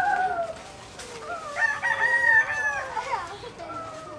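Rooster crowing twice: a crow that tails off with a falling pitch about half a second in, then a second, longer crow from about a second and a half in to about three seconds.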